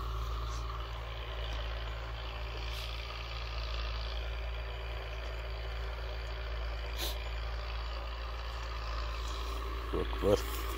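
An engine running steadily, a low continuous drone, with one faint click about seven seconds in.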